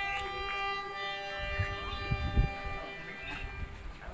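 Harmonium holding one long chord that fades out about three seconds in, with a few low drum thumps in the middle.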